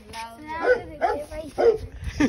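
Children laughing and giggling in short bursts.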